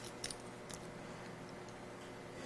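A few faint small metal clicks in the first second as a key and a stainless steel cam lock core are handled, then quiet room tone.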